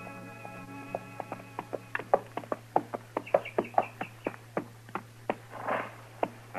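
Radio sound effect of a horse's hoofbeats, a steady clip-clop of about four to five strikes a second that grows louder from about two seconds in as the horse comes up, then slows and stops, with a short breathy rush near the end. A held musical chord fades out at the very start.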